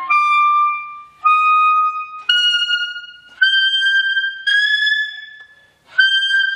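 Alto saxophone playing five high held notes in the altissimo register, climbing step by step, each about a second long with a short break between them.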